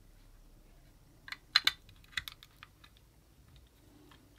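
A quick run of sharp plastic clicks and taps, loudest about a second and a half in, as a USB cable's plug is pushed into the port of a Transcend RDF9 card reader and the parts are handled.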